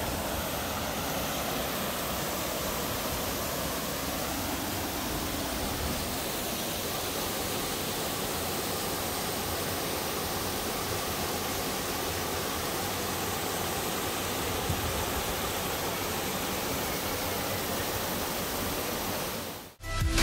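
Turner Falls waterfall pouring into its plunge pool: a steady, even rush of falling water that cuts off just before the end.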